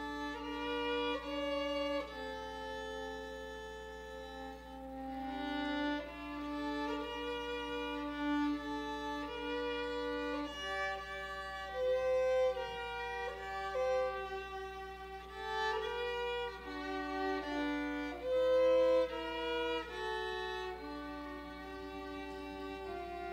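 Two violins playing a slow duet, long bowed notes in two parts moving together.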